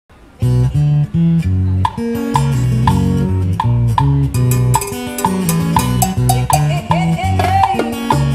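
A live band playing Cuban son, kicking in about half a second in: an electric bass carries a bouncing, syncopated bass line under guitar and a steady percussion tick.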